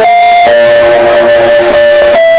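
A live band playing loudly, recorded on a phone in the crowd, with guitar prominent. The held notes shift to a lower chord about half a second in.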